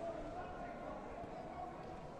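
Indistinct background voices and chatter, with no clear words.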